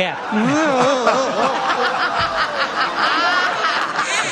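Studio audience laughing after a panelist's joke, many voices at once with chuckles and snickers mixed in.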